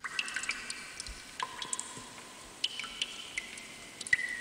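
Recorded water drops dripping one after another, each drop a pitched plink with a ringing tail. The sound is pretty reverberant, as of water dripping into a cave or a large empty space, and it starts suddenly at the beginning.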